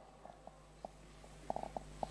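A pause in a man's speech: faint room tone with a steady low hum and a few soft clicks, several of them close together about a second and a half in.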